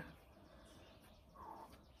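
Near silence: faint outdoor room tone, with one faint short sound about one and a half seconds in.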